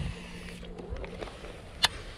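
Quiet outdoor background with a faint low hum that fades out about a second in, and one sharp click near the end.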